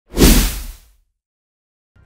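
Logo-intro sound effect: a single whoosh with a deep rumble under it, swelling up sharply and fading out within the first second.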